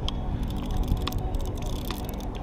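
A few sharp clicks from a conventional fishing reel being handled, over a steady low rumbling noise.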